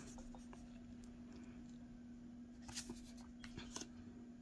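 Faint handling of tarot cards sliding against one another in the hand, with a few short scrapes and light clicks in the second half, over a steady low hum.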